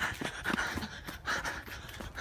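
A person panting hard, with quick, heavy breaths about two a second, while running.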